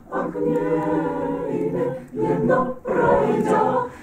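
Mixed choir of men's and women's voices singing a cappella: a long held chord, then two shorter phrases, each after a brief break.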